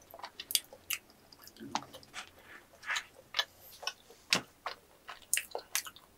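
Close-miked mouth sounds of chewing sticky yakgwa honey cookie and ice cream: irregular wet clicks and smacks, several a second, the loudest about four seconds in.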